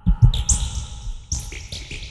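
Sparse stretch of a Japanese noise/electronic music track: short high chirp-like tones that slide down in pitch, twice, over a few low thuds, before the full mix comes back in.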